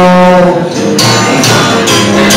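Live rock band playing. A held chord breaks off about half a second in, then the band comes back in with guitar and a steady beat of about two hits a second.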